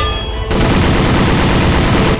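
Cartoon sound effect of a tripod-mounted machine gun opening fire about half a second in, then firing one sustained rapid burst.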